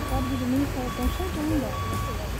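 A vehicle's reversing alarm beeping, a steady high tone sounding about four times, over people talking and low traffic rumble.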